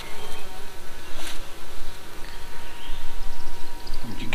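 Honey bees buzzing in a dense, wavering hum from a frame crowded with bees held over an open hive box, with one brief tap about a second in.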